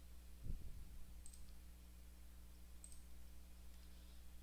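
Two computer mouse clicks about a second and a half apart over a faint steady electrical hum, with a soft low thump about half a second in.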